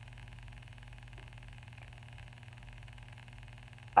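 Steady low hum of room tone, even and unchanging, with no other sound.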